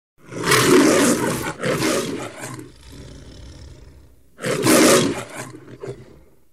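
Loud roar-like noise in surges: two back to back in the first few seconds, then a quieter hiss, then a third loud surge about four and a half seconds in.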